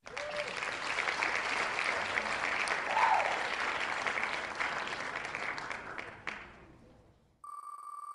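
Canned applause sound effect played by the Wheel of Names spinner as it lands on a winner. It starts suddenly and fades away about six to seven seconds in.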